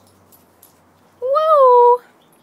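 A single drawn-out, high-pitched vocal call in the last second. It rises slightly, dips and is held steady, and it is loud.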